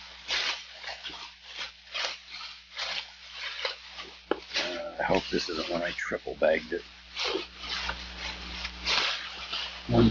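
A plastic shopping bag rustling and crinkling as it is handled and crumpled, in a run of short crackles several times a second.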